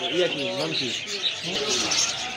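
Many small caged birds chirping and twittering together, with a low wavering voice-like sound over them in the first second and again near the end.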